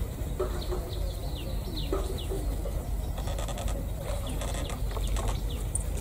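Bird calls: a few low clucking calls in the first two seconds, like domestic fowl, and short high falling chirps repeating throughout, over a steady low outdoor rumble.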